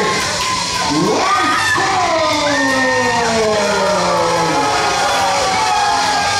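Crowd of wrestling fans, children's voices among them, shouting and cheering with long drawn-out yells, over entrance music.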